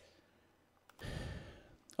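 A man's short, breathy sigh about a second in, with near silence around it.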